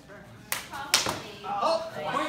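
Two sharp strikes of a training shotel, a sickle-curved sword, landing in a fencing exchange, about half a second apart and the second one louder, with voices calling out right after.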